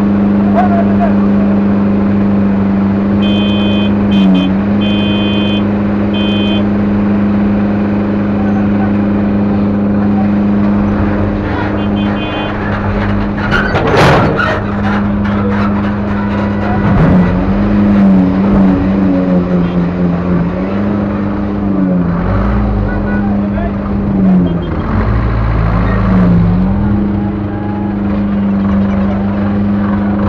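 Vehicle engines running in slow, jammed traffic: a steady engine drone that rises and falls in pitch a few times. Short, high electronic horn beeps come in quick series about 3 to 6 seconds in and again near 12 seconds, and a sharp knock comes about 14 seconds in.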